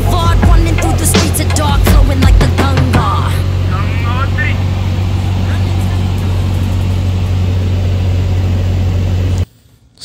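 Steady low drone of a single-engine Cessna's piston engine and propeller heard inside the cabin. Rap music with vocals plays over it for the first three seconds or so and then fades. The drone cuts off abruptly about half a second before the end.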